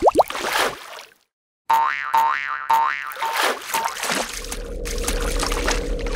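Sound effects for an animated ink-splash title: noisy splashing with a quick upward sweep at the start, then a short silence about a second in. Then come four pitched tones that swoop up and down about half a second apart, settling into a steady low drone.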